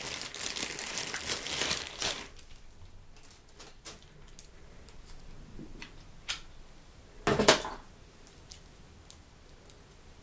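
Clear plastic bag crinkling and rustling for about two seconds as a power plug and cable are pulled out of it, then scattered light clicks of the cable being handled, with one short, louder rustle about seven and a half seconds in.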